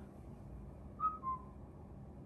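A brief two-note falling whistle-like tone, the second note a little lower and longer, about a second in, over a steady low room hum.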